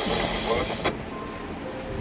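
Marine VHF radio reception: a voice crackling through the handheld radio's speaker over hiss, cut off sharply by the squelch about a second in. Soft background music with held tones runs underneath.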